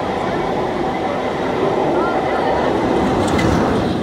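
Railway passenger coaches rolling past close below at speed, a steady loud rush of wheels on rail, with the last coach clearing at the end.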